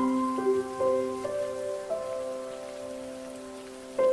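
Soft solo piano: a few quiet notes struck early on ring out and fade, and a new chord comes in right at the end. Under it runs a steady hiss of rain.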